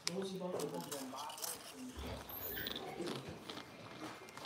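Faint, low-level voices with small handling noises and a soft low thud about two seconds in.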